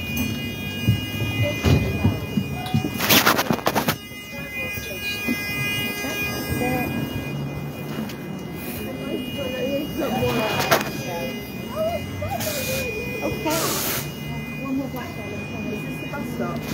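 A double-decker bus running, heard first from inside and then from the pavement beside it, with people talking nearby. A few short, loud bursts of hiss come through: one about three seconds in and two more near the end.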